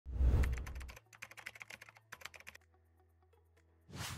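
Intro sound effects for an animated logo: a deep hit at the start, then a quick run of sharp clicks like typing, then a swoosh near the end.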